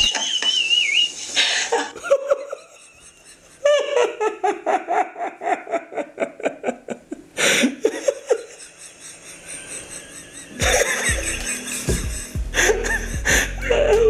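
Hearty laughter in long runs of quick ha-ha pulses that fall in pitch, with music playing from about two-thirds of the way through.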